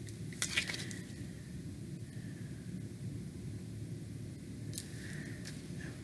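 Tarot cards being handled: a few light clicks about half a second in and one more near the end, over a steady low hum.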